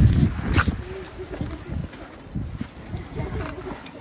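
Faint, indistinct talk over a low rumble, with one brief click about half a second in.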